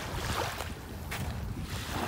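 Wind buffeting the microphone over small waves lapping at the sandy shore.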